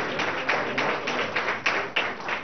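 Audience applauding, with many separate hand claps that can be picked out.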